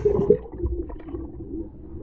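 Muffled underwater sound from an action camera's microphone under lake water: a low, wavering hum with gurgling and rumble, all the higher sounds cut off.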